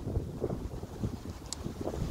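Wind buffeting a phone's microphone: an uneven low rumble, with a faint click about one and a half seconds in.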